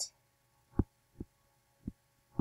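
Three soft, dull taps of a stylus on a writing surface while handwriting is being put down. The first comes just under a second in, and the other two follow within about a second.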